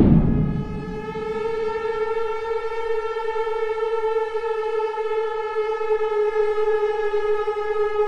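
A single long droning note held dead steady, rich in overtones, from the film score, coming in right after a loud swell that fades within the first half second.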